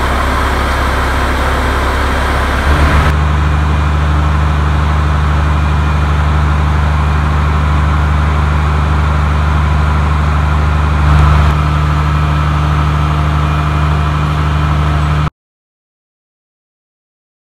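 Diesel engine of a fire department aerial ladder truck running steadily and loudly with its ladder raised, a deep steady drone with a brief swell about eleven seconds in. It stops abruptly near the end.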